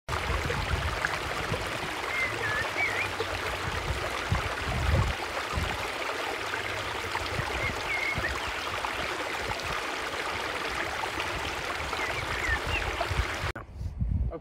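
Steady outdoor rushing noise of wind on the microphone and lake water, with irregular low buffeting and a few short bird chirps; it cuts off abruptly near the end.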